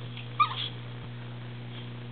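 A dog gives one short, high-pitched whimper about half a second in, over a steady electrical hum.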